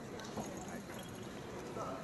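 Faint audience murmur with scattered voices, plus a few light clicks or knocks.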